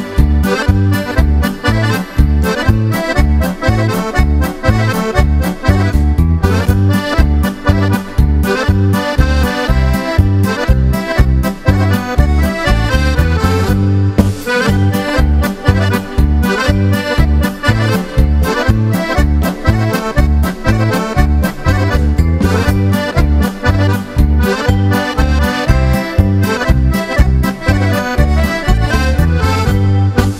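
Piano accordions leading a lively polka with a live band, over a steady, even beat in the bass.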